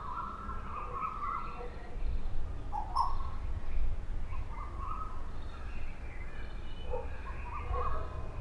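Birds calling in open farmland: scattered short calls over a steady low rumble.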